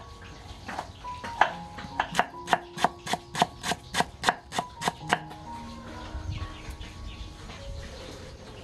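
A knife slicing lemongrass on a wooden chopping board. There are a few single chops, then a quick, even run of about four chops a second from about two seconds in until about five seconds in, when the chopping stops.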